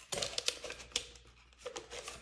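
Fingers pressing tape down inside a thin plastic party cup: a quick run of clicks and crinkles from the plastic and tape, thinning out about a second in, with a brief soft rustle near the end.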